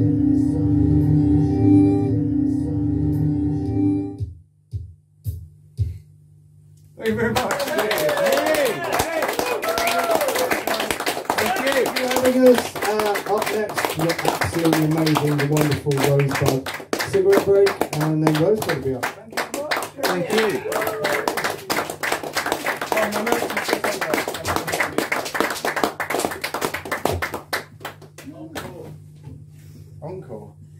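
A sustained electronic drone of steady layered tones stops about four seconds in. After a brief pause the audience applauds with cheers and voices for about twenty seconds, dying away near the end. A low steady hum stays underneath throughout.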